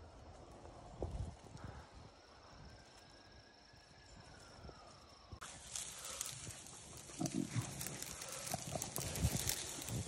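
Dry weeds and brush rustling and crackling, starting suddenly about halfway through, with a few short low sounds among them. Before that there is only a faint steady insect tone.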